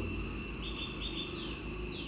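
Faint insect chirring in the background: a thin, steady high-pitched whine, with a few short chirps in the second half, over a low hum.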